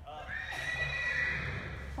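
A horse whinnying: one long, high call that rises at the start, then holds nearly steady for over a second.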